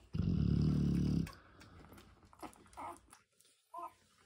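A large mastiff-type dog gives a low rumble from the throat lasting about a second. Faint small sounds follow, with a brief higher sound near the end.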